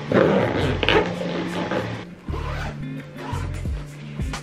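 Background music with a steady bass line. Near the start, a zipper rasps as a fabric toiletry bag is zipped shut.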